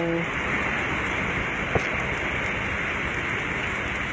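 Rain falling steadily, an even hiss of drops, with one faint click a little under two seconds in.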